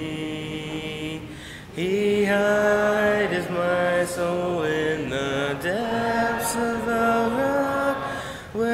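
Congregation singing a hymn in several voices, holding long notes line by line, with a short breath pause between phrases about a second and a half in.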